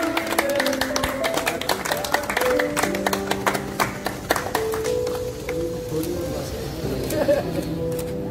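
A crowd clapping over music, the clapping dense at first and thinning out about halfway through.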